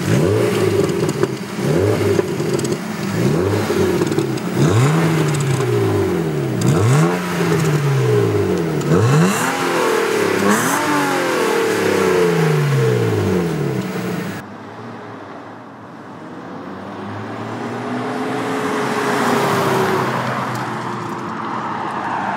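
A 1999 BMW 323is's 2.5-litre straight-six, heard from behind at the exhaust, revved in repeated quick blips, each rising and falling in pitch. After a sudden change about two-thirds of the way in, a car drives past, its engine note slowly building and then fading.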